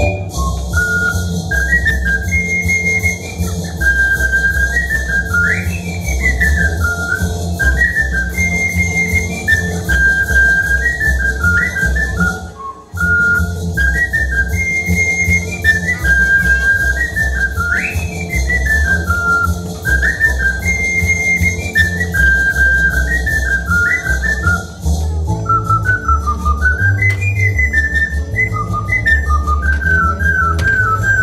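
Ocarina playing a solo melody in clear, pure notes that step up and down, with a few quick slides between notes, over an accompaniment with a bass line. The music breaks off briefly about thirteen seconds in, then carries on.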